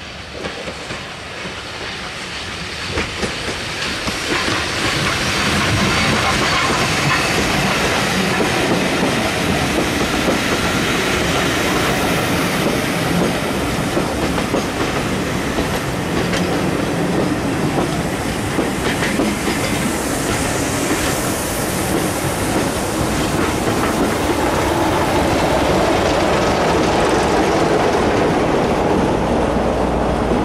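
Passenger train hauled by an SECR P class steam tank engine running past close by, its coaches' wheels rolling over the rails. The sound builds over the first six seconds as it approaches, then holds steady as the carriages go by.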